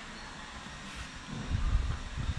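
Steady background hum of a large store, with a low rumble coming in more than halfway through.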